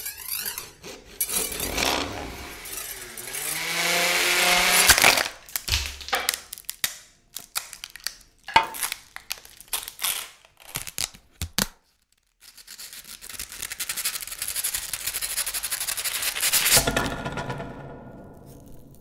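Electroacoustic music made from processed power-tool recordings such as drills, saws and sanders, granulated and saturated. A grainy swell of noise with gliding tones builds and cuts off suddenly about five seconds in. Scattered sharp clicks and knocks follow, then after a brief gap another noise swell builds and fades near the end.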